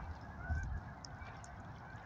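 A single short, faint Canada goose honk about half a second in.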